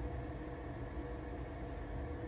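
A pause in speech. Only a steady low background hum and hiss, room tone, is heard, with faint steady tones and no distinct events.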